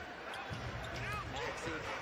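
Basketball game broadcast audio: a basketball dribbled on the court, with voices underneath.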